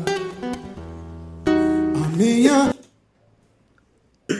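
Live acoustic guitar chords ringing and a man singing a phrase with sliding vocal runs; the music cuts off abruptly about two-thirds of the way in.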